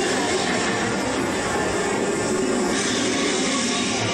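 Steady roaring noise from a train ride through the Primeval World dinosaur diorama. It has no clear beat and turns brighter and hissier about three quarters of the way through.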